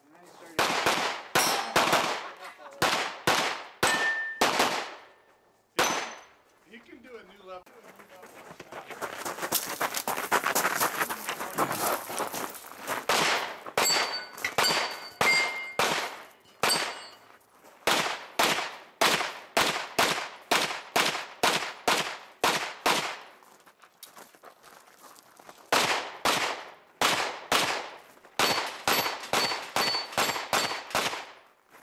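Pistol-caliber carbine fired in quick strings of shots, with steel targets ringing after some hits. The firing pauses about six seconds in, gives way to a few seconds of rushing noise, resumes about thirteen seconds in, and pauses briefly again near the twenty-four-second mark.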